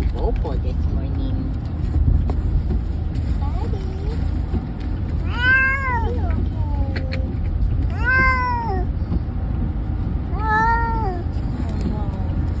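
Cat meowing from inside a wire carrier: three long drawn-out meows, each rising then falling in pitch, a couple of seconds apart, with a shorter one before them. A steady low rumble of a moving car runs underneath. The cat is complaining at being shut in the carrier.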